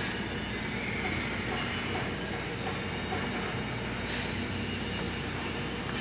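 Steady welding-shop noise: the electric hum of welding machines under a continuous hiss and crackle of arc welding, at an even level throughout.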